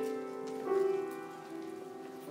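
Piano playing slow, sustained chords: one chord struck at the start and another a little under a second in, each left to fade.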